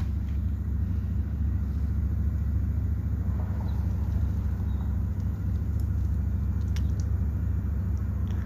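A steady low rumble with a couple of faint clicks; the angle grinder is not running.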